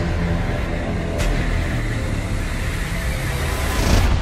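Film-trailer sound effects: a sustained deep, noisy rumbling roar with a heavy low drone, like massive spacecraft passing, with one sharp hit about a second in, swelling slightly toward the end.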